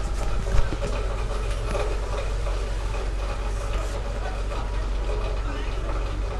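Rainy outdoor ambience under a shelter, a steady low rumble of traffic, with one sharp thump about half a second in.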